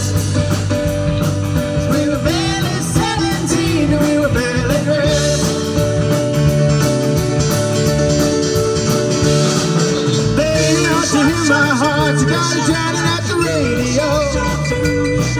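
A rock band playing live on a stage: electric guitar, drums and keyboards, with a man and a woman singing.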